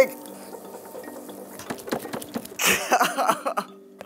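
Wet clay being worked by hand on a spinning pottery wheel, faint small squelches and ticks under steady background music. About three seconds in, a man's voice breaks out briefly and loudly, as the tall piece of clay gives way.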